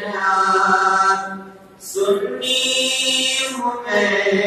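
A man's voice chanting a manqabat, an Urdu devotional poem, in long held notes. It breaks off briefly about a second and a half in, then picks up again.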